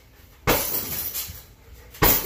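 A kick landing on a hanging heavy bag about half a second in: a sharp smack followed by about a second of rattling from the bag's chain and metal stand. The next kick lands right at the end.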